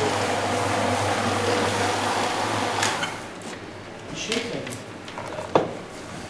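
Single-disc floor machine buffing oil into oak parquet with a rag under its pad, running with a steady hum. It winds down about three seconds in, and a single sharp knock follows near the end.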